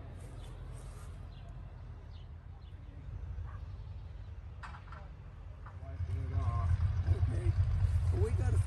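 Outdoor car-show ambience: a steady low rumble that grows louder about six seconds in, with faint high chirps early on and people talking nearby toward the end.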